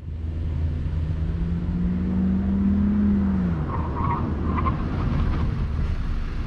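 Honda Civic RS Turbo's 1.5-litre turbocharged engine pulling hard with a rising note, then cutting off about three and a half seconds in as the car brakes hard. Brief tyre squeals follow as it stops, over a steady rumble of road and wind.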